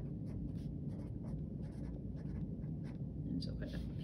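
Felt-tip marker writing on lined spiral-notebook paper: a run of short scratchy strokes as the words are written out.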